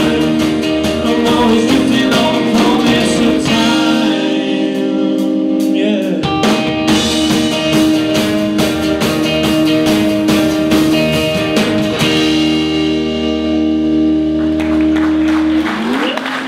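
A live rock band playing the closing bars of a song: electric and acoustic guitars, bass guitar and drum kit. The bass and drums drop out for a couple of seconds about four seconds in, then come back. The band ends on a held chord that stops near the end.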